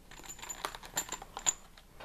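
A plastic-wrapped pack of small metal CO2 cartridges being handled, giving a run of light irregular clicks and rattles, the sharpest about halfway and three-quarters of the way through.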